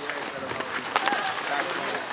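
Ice hockey rink sounds during play: skates scraping on the ice, a sharp stick or puck knock about a second in, and voices calling out across the rink.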